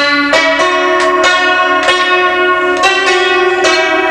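A melody of bright, bell-like struck notes, each one ringing on, that starts abruptly and loudly and runs on with a new note about every half second.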